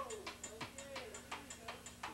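Teppanyaki chef's metal spatula clicking against the steel griddle in a quick, even rhythm, about five clicks a second.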